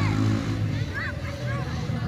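A steady low engine hum, like an idling motor, under spectators' voices, with a few short high-pitched calls about a second in.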